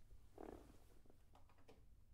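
Near silence: room tone, with a faint short sound about half a second in and a few faint clicks near the end.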